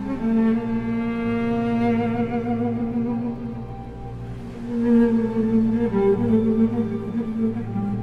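Cello playing slow, long-held bowed notes, fading a little around the middle and swelling again about five seconds in.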